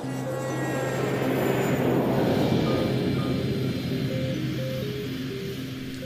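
Background music with a held low note and short notes above it, over military jet engine noise that swells to a peak about halfway through and then fades away.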